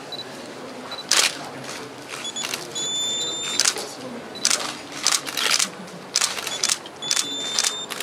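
Camera shutters clicking about a dozen times, some in quick pairs, as photographers shoot. Twice, about two and a half and seven seconds in, a digital camera's short high focus-confirm beep sounds just before a shutter fires.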